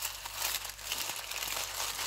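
Clear plastic packaging bags crinkling as they are handled, a continuous run of small crackles.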